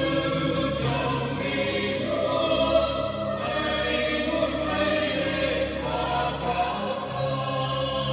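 Church choir of women's and men's voices singing a hymn in parts, with long held chords that change every second or two.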